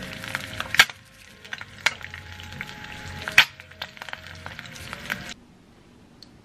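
An egg frying in oil in a nonstick pan, sizzling with a dense crackle of small pops and two sharper, louder pops. The sizzle cuts off suddenly a little after five seconds in.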